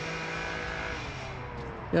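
A steady, even motor drone, one low hum with overtones, easing off and dropping slightly in pitch in the second half.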